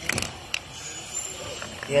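Rebound hammer firing against a concrete slab: a sharp clack just after the start as the spring-loaded mass strikes the plunger, then a single lighter click about half a second later. The impact is the test blow whose rebound gives a reading of the concrete's surface hardness.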